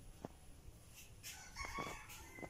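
A rooster crowing: a drawn-out pitched call starting a little past halfway, with a few faint clicks of a spoon working pulp in a metal sieve before it.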